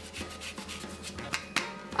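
Orange peel being scraped across a handheld zester, a series of short rasping strokes as the zest is grated off.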